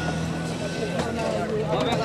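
An engine running steadily with a low, even hum, under several men's voices talking.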